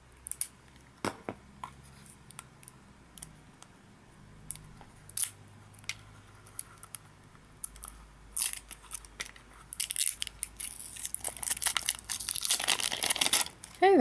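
Thin plastic seal being cut and peeled off a plastic push-up candy tube: scattered clicks and crinkles, then a denser crackling of plastic over the last few seconds.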